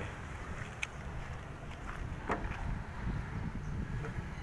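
Low rumble of wind buffeting a handheld phone's microphone as it is carried, with two faint clicks.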